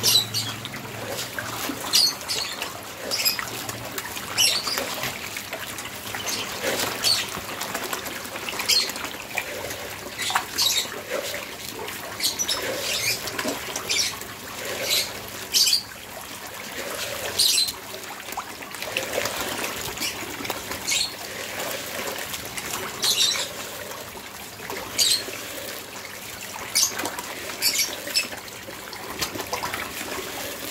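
A thin stream of water trickling steadily into a tarpaulin catfish pond, with short, sharp splashes at the water surface every second or two.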